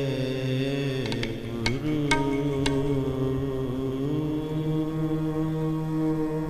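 Sikh kirtan: a man's voice singing long held notes that slide from pitch to pitch, over a steady instrumental drone. A few sharp ringing drum strokes fall in the first half.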